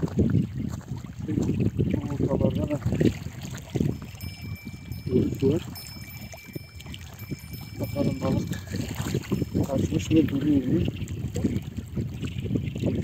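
Indistinct talk between people, in short stretches with pauses, and a faint high steady tone in the middle.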